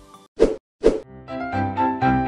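Two short cartoon-style transition sound effects about half a second apart, then background music starting up and growing louder near the end.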